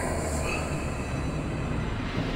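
A steady, dense rumble with a high, metallic screeching running through it, in the manner of a dark sound effect.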